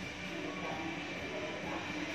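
Quiet background music over a steady hum of room noise.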